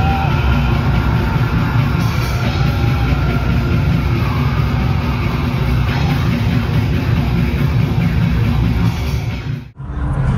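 A metal band playing live through a loud arena PA, with a dense, heavy low end. The sound drops out abruptly just before the end.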